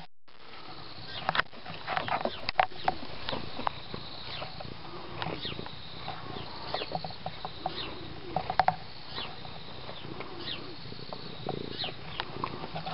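Domestic cat purring close to the microphone, with scattered rustles and clicks as its fur brushes against the camera.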